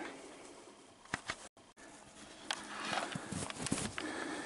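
Footsteps crunching in snow, irregular and getting louder over the last second and a half, after a faint stretch with a few clicks and a brief dropout.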